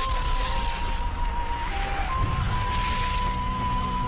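Soundtrack effect: a held high tone, stepping slightly in pitch, over a deep rumble and a rushing hiss.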